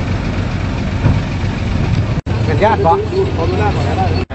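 Steady low rumble of a running vehicle engine under a wash of outdoor noise, broken by a brief dropout just after two seconds; a person starts talking over it about two and a half seconds in.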